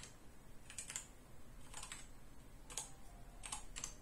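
Computer keyboard being typed on: a handful of light, irregular keystrokes, some in quick pairs, as a search query is entered.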